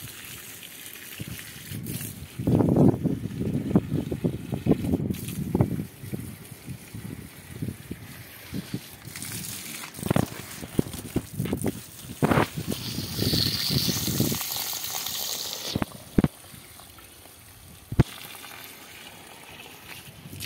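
Water from a garden hose splashing onto potting soil and wet concrete, in uneven spells that are loudest a few seconds in and again midway. A single sharp click comes near the end.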